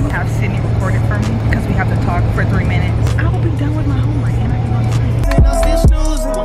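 Steady low drone of a bus in motion, heard from inside, with voices and music over it. About five seconds in it cuts off abruptly to hip hop music.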